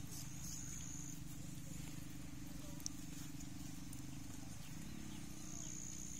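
Straight razor scraping through lathered beard stubble, faint against a steady low hum that shifts in pitch about three-quarters of the way through, with one sharp click near the middle.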